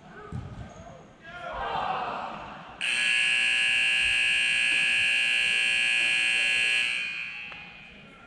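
Arena game-clock buzzer sounding once, a loud steady tone lasting about four seconds, marking the end of the game; it cuts in suddenly and dies away with a short echo in the hall.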